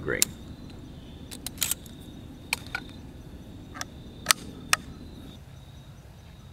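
Sharp metallic clicks, about eight at irregular intervals, from the breech of a homemade caseless .22 rifle being worked while it is loaded with its ball and powder charge.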